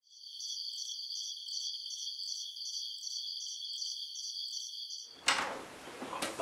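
A high-pitched pulsing sound effect, pulsing about three times a second. About five seconds in it cuts off abruptly, and a sudden bump and room noise follow, as a door opens.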